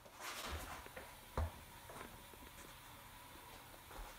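Faint handling and rustling noise as a phone camera is picked up and set back in place, with a sharp knock about a second and a half in.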